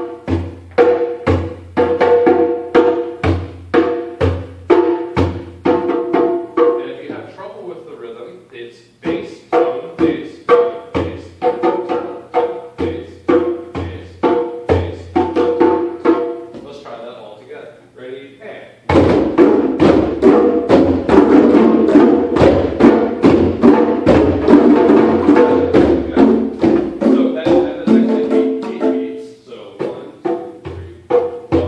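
A group of hand drums, congas and djembes, playing a repeated rhythm together. The strokes are fairly sparse at first and ease off briefly twice. About two-thirds of the way in, the drumming turns abruptly louder and denser as many drums play at once, then stops just before the end.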